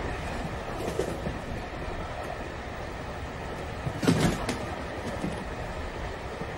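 Steady rumble of a railway carriage, with a few sharp knocks, the loudest a pair about four seconds in.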